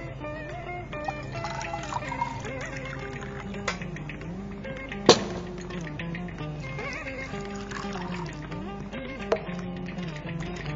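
Background instrumental music, with water poured from a copper jug into a steel pressure cooker of soaked chickpeas. A few sharp clinks, the loudest about five seconds in.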